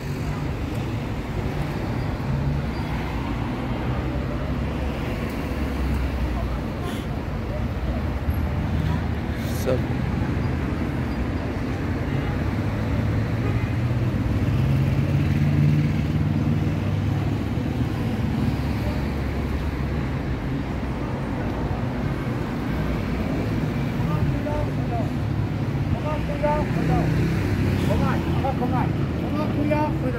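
Street ambience of road traffic: a steady rumble of cars on a city road beside the pavement, swelling about halfway through, with voices of people talking nearby, plainest near the end.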